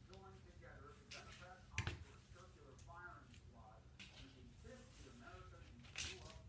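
Faint, low talking, with one sharp tap or knock about two seconds in.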